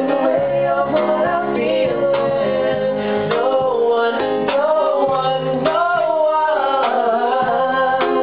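Guitar playing a 1-5-6-4 chord progression in A-flat with a man singing a melody over it, his line sliding up and down in pitch.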